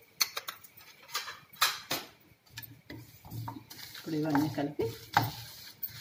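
A spatula scraping and stirring flax seeds, dried red chillies and garlic dry-roasting in a ceramic-coated frying pan, with several sharp scrapes in the first two seconds. A voice is heard about four seconds in.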